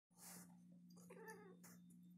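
Faint: a long-haired tabby cat gives one short, wavering yowl about a second in as it is held down against its will, with short scuffling bursts of noise around it. A steady low hum runs underneath.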